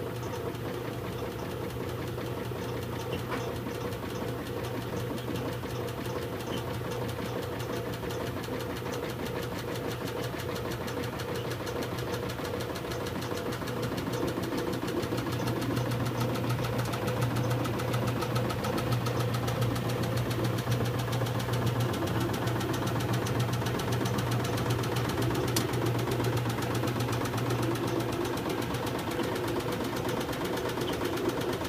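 1966 Philco Flex-A-Wash washing machine running: a steady motor hum with a fast mechanical clatter, growing louder about halfway through.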